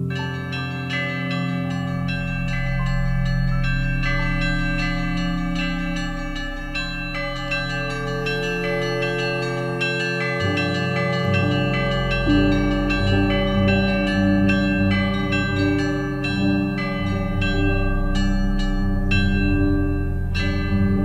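Ambient background music: a dense, continuous run of chiming bell-like notes over steady, held low tones.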